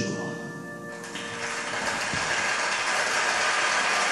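The last sustained notes of a song with piano accompaniment ring and fade away. About a second in, a large arena audience breaks into steady applause that swells and holds.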